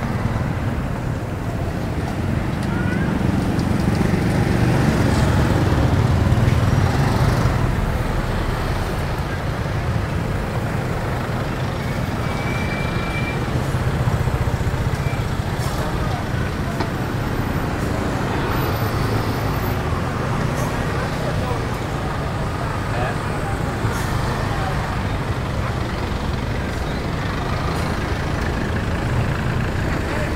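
Busy street traffic: motorbikes and cars running and passing, with a steady low rumble that swells a few seconds in, and the chatter of a crowd of people around the food stalls.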